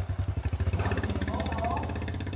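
Small motorcycle engine running close by with a rapid, even low putter as the bike rides off.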